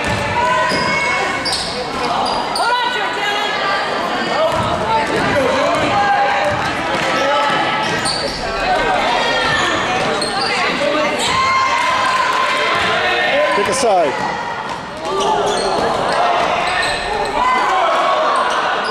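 A basketball bouncing on a hardwood gym floor during play, with players and spectators calling out, all echoing in the gym.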